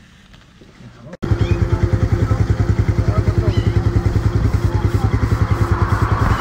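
Faint outdoor background for about a second, then a motorcycle engine idling close by, loud with a fast, even pulse that holds steady.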